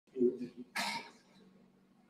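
A man clearing his throat: a short voiced hum followed by one brief cough.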